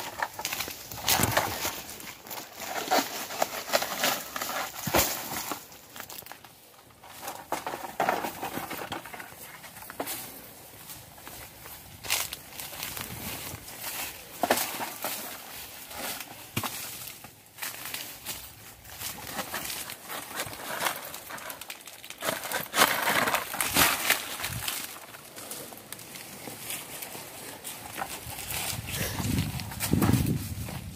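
Footsteps through grass and dry fallen coconut fronds, with palm leaves brushing and rustling as people push through them, and scattered irregular cracks and knocks.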